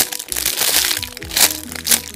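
A clear plastic packaging bag crinkling in three sharp bursts, at the start, partway through and near the end, as a soft squishy toy is squeezed inside it. Background music with steady held notes plays throughout.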